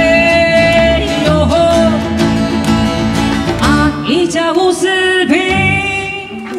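Taiwanese indigenous folk song performed live: a woman sings a melody of long held, wavering notes with glides between them, over plucked yueqin (moon guitar) and acoustic guitar with a bass line.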